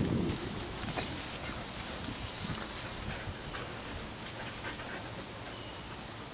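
A dog mouthing and chewing a clump of shed sheep wool in the grass, with scattered small clicks and rustles. A brief low rumble comes right at the start.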